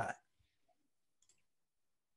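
A man's word trails off, then near silence: room tone with two or three faint, quick clicks about a second in.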